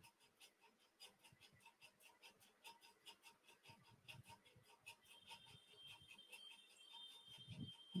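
Near silence: faint room tone of an online call.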